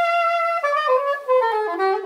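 Yanagisawa Elimona S880 soprano saxophone played solo: a held note, then from about half a second in a quick run of notes stepping downward to the low end of the phrase.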